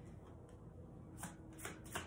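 A tarot deck being shuffled by hand: a few soft, short strokes of the cards in the second half.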